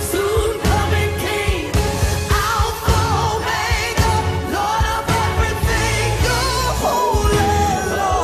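Christian praise-and-worship song playing loudly: a vocal melody with vibrato over drums, bass and keys.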